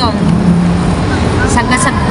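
Steady city street traffic noise with a low engine hum from a passing vehicle.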